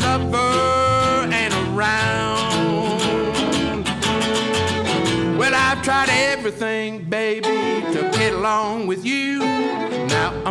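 Live western swing band: a man sings long held notes over two strummed archtop guitars, and a fiddle joins in bowing about halfway through.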